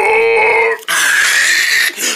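A person's voice imitating a dog for a paper poodle puppet: two long vocal sounds, the first pitched and the second rougher and held steady.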